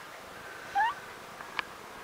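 A newborn puppy gives one brief, rising squeak about a second in, then there is a faint click.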